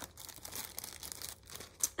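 Plastic zip-top bag being pulled open and handled, a soft crinkling rustle with one short sharp crackle near the end.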